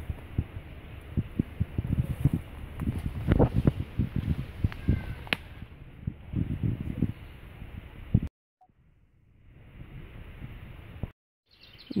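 Footsteps pushing through leafy woodland undergrowth: irregular crackles and rustles of leaves and snapping twigs. The sound cuts off suddenly about eight seconds in.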